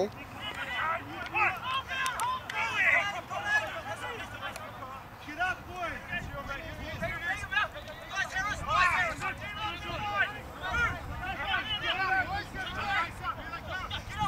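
Distant shouting voices on a rugby league ground: many short calls from players and onlookers overlapping through the whole stretch, with no nearby talk.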